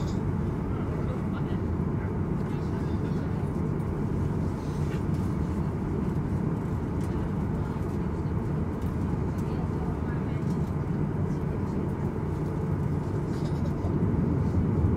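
Steady low rumble inside a Boeing 737 passenger cabin as the jet taxis: the engines at taxi thrust and the airframe rolling over the taxiway, even in level throughout.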